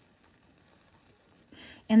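A lit incense charcoal disc, held in tongs, fizzing faintly as it catches and sparks.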